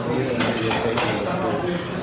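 Indistinct speech: voices talking without clear words.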